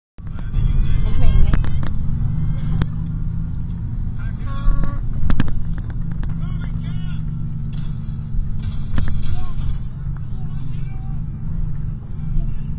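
Steady low road and engine rumble of a moving vehicle, heard from inside the cabin, with snatches of voices talking over it and a few sharp clicks.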